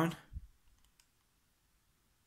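A soft handling thump, then a few faint clicks in the first second as a thumb presses the buttons of a TV remote control. After that, near silence.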